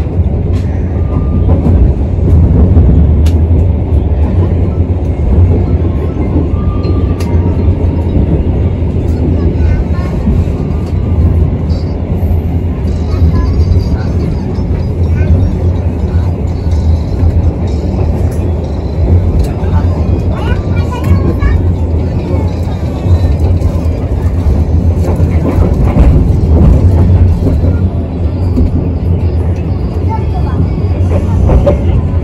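Steady low rumble of a moving economy-class passenger train, heard from inside the carriage.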